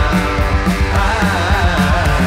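Live rock music: electric guitar played through an amplifier, with a drum kit.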